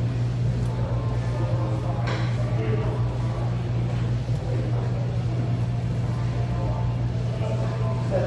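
Steady low hum with faint background voices, and a single sharp click about two seconds in.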